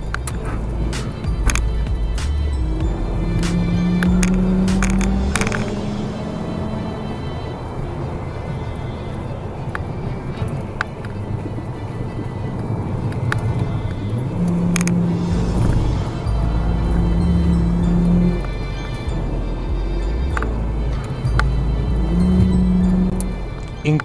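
Inside the cabin of a Mk6 Volkswagen Golf with the 2.5-litre five-cylinder engine and automatic gearbox, driven hard on a twisty road: the engine note holds steady in several stretches over continuous road rumble, with background music playing over it.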